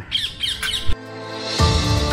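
A few harsh bird squawks in the first second, then background music fades in and grows fuller about a second and a half in.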